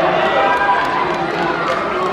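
Spectators shouting and calling out to the runners, many voices overlapping into a crowd din, with a few scattered sharp claps.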